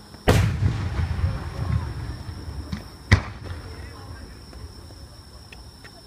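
Aerial firework shell bursting close by: a loud bang just after the start, followed by a long rolling echo that dies away over about three seconds. A second sharp bang comes about three seconds in, then a few faint cracks.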